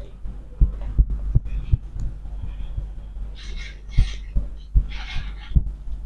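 Hands massaging a person's head: about a dozen dull, irregular low thumps, with two short hissing rustles in the middle.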